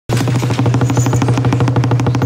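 A large drum beaten in a fast, steady roll with two wooden beaters, a low tone ringing under the rapid strokes: a drumroll before an execution.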